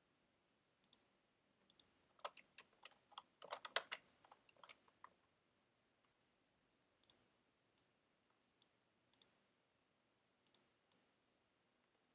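Faint computer keyboard key clicks: a quick flurry of keystrokes in the first half, then single clicks spaced out about once a second.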